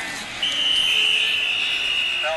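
Referee's whistle blown in one long, steady, shrill blast starting about half a second in, blowing the play dead.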